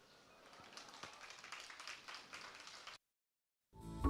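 Near silence: faint room tone with a few light ticks. It drops to dead silence about three seconds in, just before music starts at the very end.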